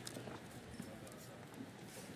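Faint, irregular taps of shoes walking across the stage.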